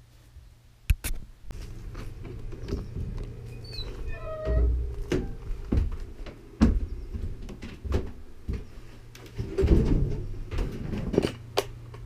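Thumps, knocks and rattling as a storage shed's door is opened and tools and gear are moved about, with a short squeak about four and a half seconds in.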